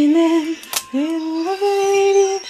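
A woman humming in thought: one held note, a short click, then a second longer note that steps up slightly and is held.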